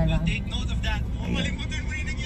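Steady low rumble of a car's interior, engine and road noise heard from inside the cabin, under people talking.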